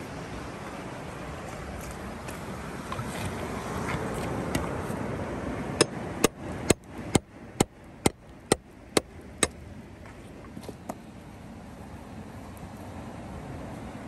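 A hammer striking a chisel about nine times in an even rhythm, roughly two blows a second, each a sharp tap, chipping an ammonite nodule out of a shale slab.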